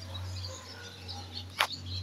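Faint bird chirps over a low steady hum, with one short click about one and a half seconds in.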